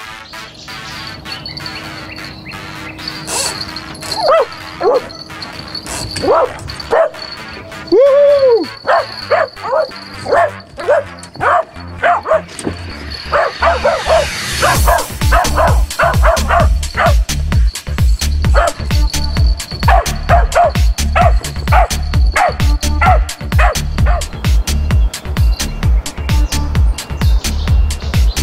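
A dog yipping and barking in a long run of short, high calls, over electronic music whose heavy beat comes in about halfway through.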